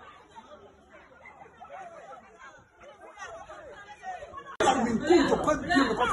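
Only voices: faint, indistinct chatter of several people, then loud overlapping talk that cuts in abruptly about two-thirds of the way through.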